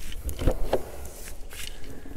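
Caravan exterior storage hatch being unlatched and swung open: a few short clicks from the lock and door, with one dull knock about half a second in.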